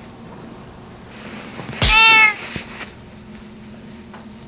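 A house cat meows once, a short call about two seconds in that rises and then falls slightly in pitch.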